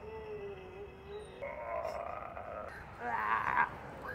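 Recorded spooky sound effect from an animated Halloween yard decoration: a drawn-out low moan, then a short louder burst about three seconds in.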